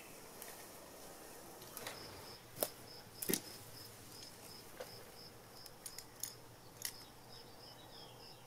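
Faint insect chirping, a short high note repeated about three times a second from about two seconds in. A handful of sharp clicks from climbing pulley and rope hardware being handled.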